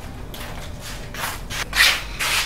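Three short scuffing, rubbing noises, the loudest near the end: sandals scuffing a concrete floor and clothes rustling as a woman walks up and sits down on a wooden bench.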